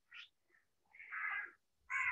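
Faint animal calls: a short one just after the start, then two longer calls about a second in and near the end.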